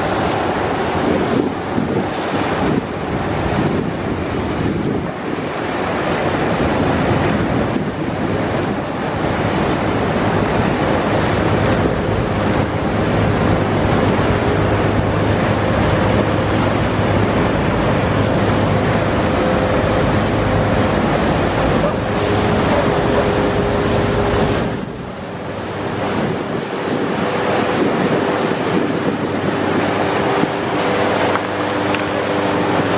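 Icebreaker Kapitan Evdokimov's hull breaking through river ice at close range: a loud, continuous rush of crushed ice and churning water along its side, with wind buffeting the microphone. A steady engine hum comes in about a third of the way through, and the rushing dips briefly near the end.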